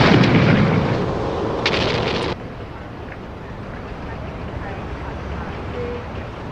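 A rock blast going off: a deep boom with falling debris that fades over about a second, and a sharp crack near two seconds in. The sound then cuts off abruptly, leaving a faint hiss.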